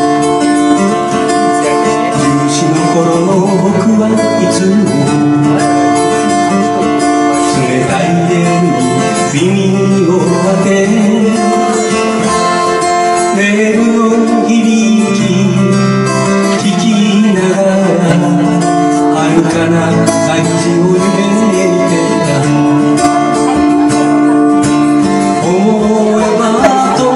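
Acoustic guitar strummed live, accompanying a slow folk melody sung in long held notes.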